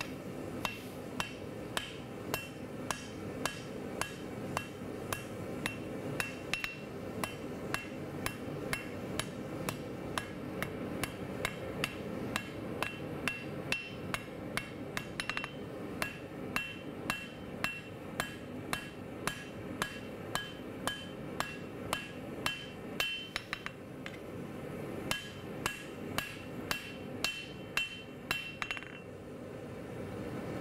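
Hand hammer striking red-hot steel on an anvil, forging a knife blade: steady blows about two a second, each with a short bright ring from the anvil, over a steady background hum. The blows pause briefly near the end.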